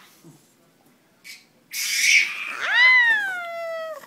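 A toddler's high-pitched squeal: a breathy shriek about two seconds in runs into one long cry that rises and then slowly falls, stopping abruptly at the end.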